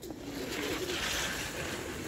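Domestic pigeons cooing faintly under a steady rustling noise.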